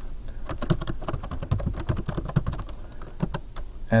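Typing on a computer keyboard: a quick, uneven run of key clicks that starts about half a second in and stops shortly before the end.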